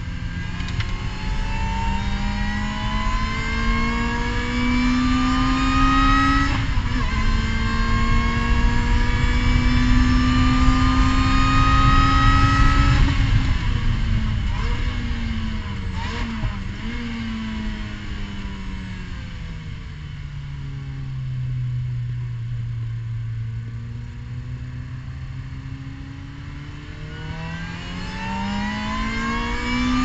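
Race car engine heard from inside the car, pulling hard with the revs climbing, changing up a gear about a third of the way in and climbing again. Past the middle the driver lifts off and the revs fall with a few quick blips from downshifts, stay low for a few seconds, then rise sharply again to about 7,500 rpm in second gear near the end.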